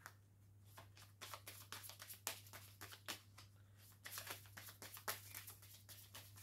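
Faint hand-shuffling of a deck of Kipper cards: clusters of soft, quick card flicks and clicks with short pauses between them.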